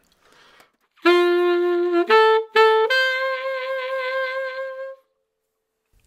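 Solo saxophone playing a short phrase: a long low note, two short higher notes, then a long held note with a slight vibrato that stops about five seconds in. It is the lesson's rhythmic variation pattern on the melody, played in reverse.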